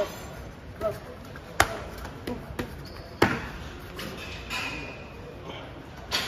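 Kickboxing strikes, gloved punches and a shin-guarded kick, landing on a partner's gloves and arms: a run of sharp smacks, the two loudest about a second and a half and three seconds in.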